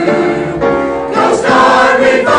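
Mixed church choir of men and women singing together in harmony, holding chords that change a couple of times.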